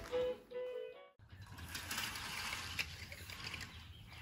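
A baby's light-up zebra music toy playing a short electronic tune of simple beeping notes, cut off abruptly about a second in. Then a steady hiss with a few faint clicks.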